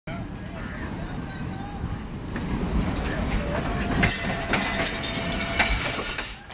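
Hitachi ALCO HBU-20 diesel-electric locomotive running as it pulls a passenger train along the platform, with a steady low rumble and repeated clicks of wheels over rail joints. A thin steady tone joins about three and a half seconds in and stops just before the end.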